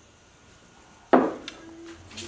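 A ceramic mug set down on a wooden table: one sharp knock about a second in with a short ring, then a smaller click.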